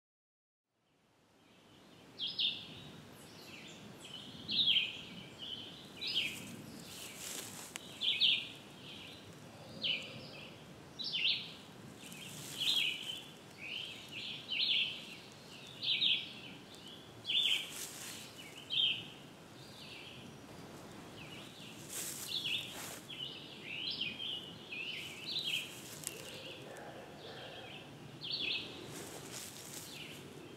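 Wild birds singing in woodland: short, high chirping notes repeated roughly once a second over a steady outdoor hiss, fading in about a second in.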